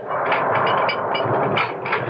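Radio-drama sound effect of a vault gate being swung shut and locked: a continuous scraping noise with several sharp knocks.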